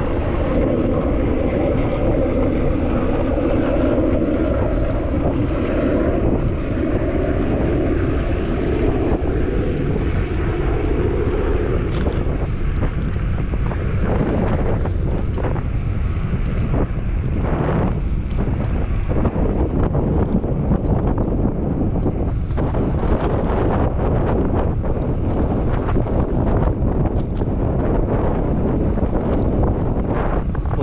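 Wind buffeting the microphone of a moving bicycle, a steady rumble throughout. Over it, for about the first twelve seconds, the drone of a small aircraft flying overhead, slowly dropping in pitch as it fades away.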